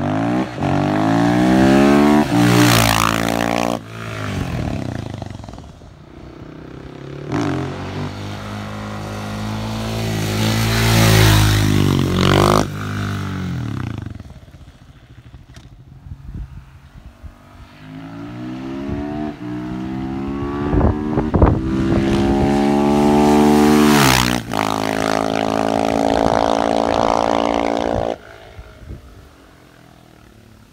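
KTM 690 SMC-R supermoto's single-cylinder engine through a Wings aftermarket exhaust, accelerating hard through the gears in several separate pass-by runs, its pitch climbing with each gear and falling away as the bike goes past. There are a few sharp cracks partway through the last run.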